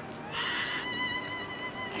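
A sustained high note from the background music score. It enters with a breathy attack about a third of a second in, then holds steady at one pitch.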